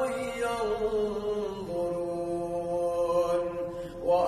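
An imam's solo Quran recitation, chanted in tajwid: one long held note as a verse ending is drawn out, stepping down in pitch a little under two seconds in.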